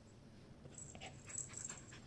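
A pet dog panting faintly in short, quick breaths that start a little under a second in.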